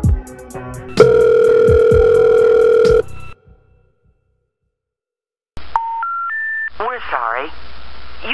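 A hip hop beat ends on a held two-note tone and cuts out. After about two seconds of silence, three short rising telephone intercept tones sound, followed by a recorded operator voice: the signal of a disconnected number.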